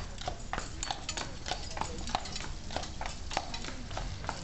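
Horse's hooves clip-clopping on a hard road, about three or four strikes a second, over a low steady rumble.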